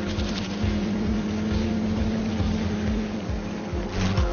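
A steady low droning hum under an even hiss, with the hum dropping away about three seconds in.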